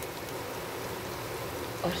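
Mashed potato halwa frying gently in ghee in a non-stick pan, a steady soft sizzle.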